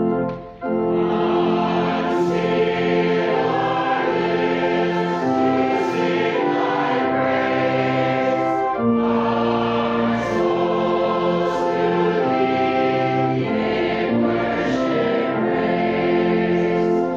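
A congregation singing a hymn in slow, held notes, with a short break between phrases about half a second in.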